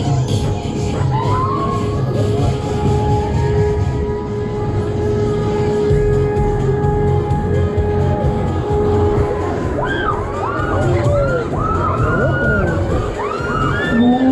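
Loud fairground ride music with a pulsing beat. From about ten seconds in, many short shrieks and shouts from riders come over it as the ride swings.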